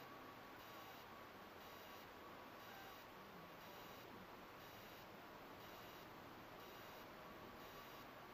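Near silence: a faint steady hiss, with a faint high-pitched tone pulsing about once a second.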